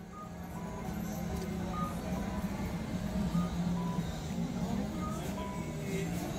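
Traffic and crowd noise on a busy street, with short high electronic beeps from an audible pedestrian crossing signal sounding at irregular intervals of about a second.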